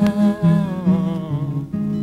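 Acoustic guitar playing under a long wordless sung note that slides down in pitch about a second in and fades out.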